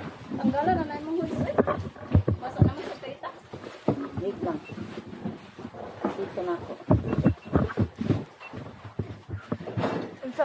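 Children's voices calling out in short bursts without clear words, mixed with sharp knocks and clatter from the ride seats.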